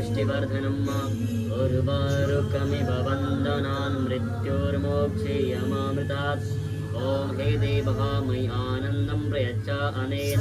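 Devotional Shiva mantra chanted by voices over a steady low drone; the drone shifts pitch a few times.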